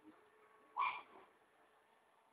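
A macaw giving a single short call just under a second in.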